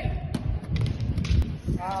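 An arrow loosed from a hand-drawn bow, with a sharp snap about a third of a second in. A run of clicks and knocks follows, the sharpest about a second and a half in.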